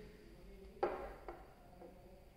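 Two short light knocks against faint room tone: a sharper one just under a second in that dies away quickly, and a softer one about half a second later.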